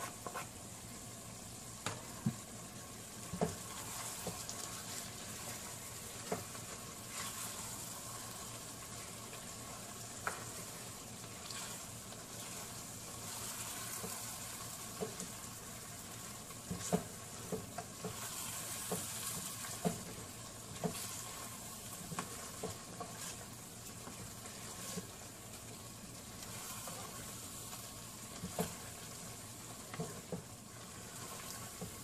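A spatula stirring a thick tomato and pepper stew of cow skin in a frying pan, with irregular knocks and scrapes against the pan over a steady sizzle from the cooking sauce.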